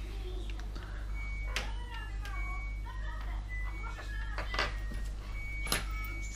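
A few light clicks and taps of a tablet and tools being handled on a towel-covered table, over a low steady hum.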